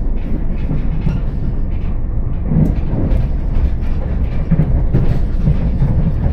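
Inside the saloon of a Class 375 Electrostar electric multiple unit under way: a steady low running rumble with irregular clicks and knocks from the wheels over the track at a junction.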